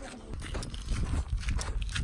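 Footsteps on a dirt and gravel footpath: irregular short crunches over a low rumble of wind on the microphone.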